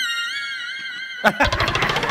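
A high, wavering squeal-like tone for about a second, cut off by a sharp knock and a quick rattle, then audience laughter.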